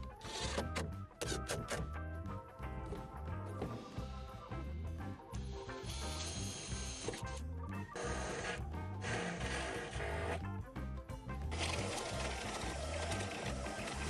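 Background music with a steady beat over a cordless drill running in bursts, driving screws into wood and boring through a steel tube frame with a step drill bit.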